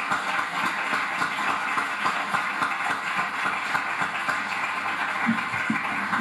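Audience applause: many hands clapping at a steady level, stopping near the end.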